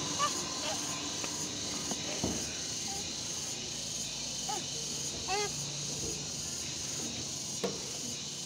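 A toddler clambering up steel checker-plate slide steps on hands and feet, with two dull knocks on the metal and a few brief high-pitched murmurs from the child, over a steady high insect drone.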